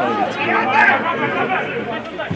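Footballers shouting to one another on the pitch during play, several voices calling out in quick succession.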